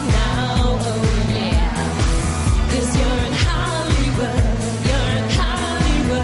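Pop dance track with a steady, heavy beat and female singing.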